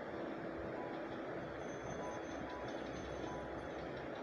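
Stuffed papads frying in hot mustard oil in a nonstick pan: a steady, even sizzle.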